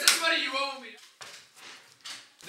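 A sharp clack of a poker chip set down on a wooden table, then a man's voice for most of the first second, then a few faint light taps.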